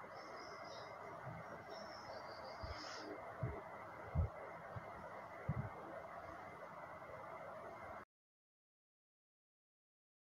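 Steel spatula stirring a thick mince and lentil mixture in a steel pot, with a few dull knocks of the spatula against the pot over a steady background hiss. Faint bird chirps come in during the first three seconds, and the sound cuts off to dead silence about eight seconds in.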